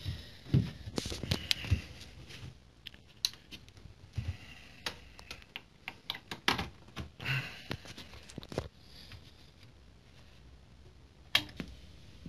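Irregular clicks, knocks and rustles of cables and plastic parts being handled at the back of a CRT television, with one sharper click near the end.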